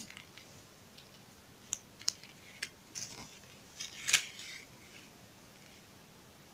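Scattered light clicks and taps of rhinestone trim being handled and laid down on paper, loudest in a short cluster about four seconds in.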